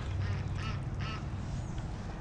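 A duck quacking twice, two short calls about half a second apart, over a low steady rumble.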